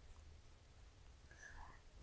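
Near silence: faint low room hum, with one brief faint sound about three quarters of the way through.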